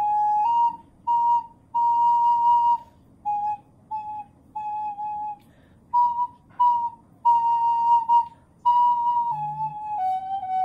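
Wooden recorder played solo: a simple tune moving among a few neighbouring high notes, played in short notes and phrases with brief gaps between them.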